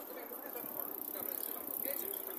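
Faint voices of passers-by over the steady running noise of a moving mobility scooter.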